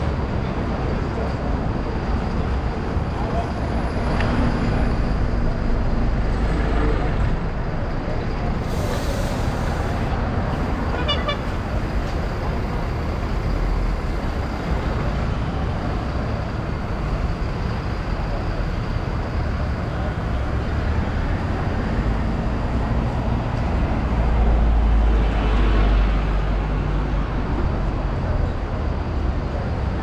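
Road traffic on a busy city street: cars and buses running past in a continuous low rumble that swells twice, a few seconds in and again near the end.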